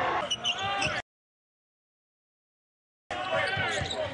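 Basketball game broadcast sound, with the ball bouncing and voices on the court. It cuts out to dead silence about a second in and comes back after about two seconds.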